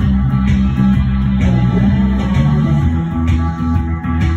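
Live instrumental rock: an electric bass guitar playing low, shifting notes under an electric guitar.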